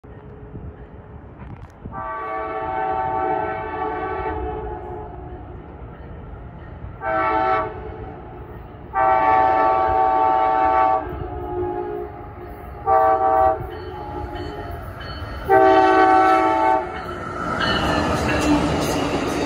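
Amtrak passenger train's air horn sounding as the train approaches: five blasts, long and short in turn, each louder than the one before. The rumble and rail noise of the train swell near the end as it reaches the platform.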